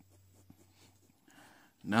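Pencil lead scratching faintly on paper in short strokes, with a low steady hum behind it. Near the end a man's voice cuts in.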